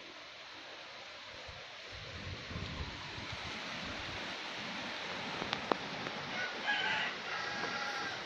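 A rooster crowing near the end over steady background noise, with a single sharp click a little past halfway.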